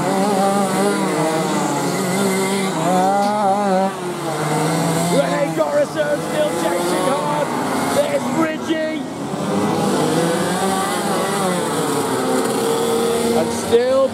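Several 125cc two-stroke kart engines racing past together, their pitches rising and falling as they accelerate and back off through the corners.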